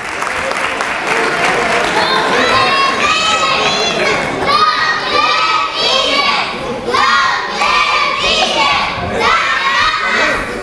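A group of children shouting and cheering in high voices over a crowd's hubbub, a run of short shouts one after another starting about two seconds in.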